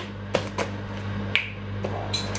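A few short clicks and taps from groceries and their packaging being handled on a table, over a steady low hum.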